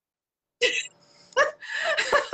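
Laughter in short breathy bursts, starting about half a second in after a moment of dead silence.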